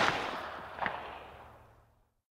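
Echo of a sharp bang dying away as the track ends, with one fainter crack just under a second in, then fading out by about a second and a half.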